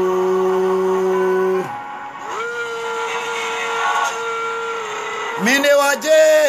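A man singing unaccompanied in long held notes: one steady note that ends about two seconds in, then a higher note held for a few seconds. Near the end his voice slides upward into a quicker, moving melody.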